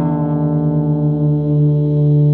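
1958 Danelectro U2 electric guitar with both lipstick pickups on in series (middle selector position), played through a Friedman Small Box head and 2x12 cabinet: one chord left ringing, sustaining steadily without a new strum.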